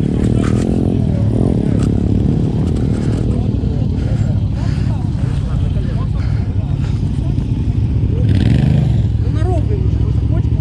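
Enduro motorcycle engines running and revving.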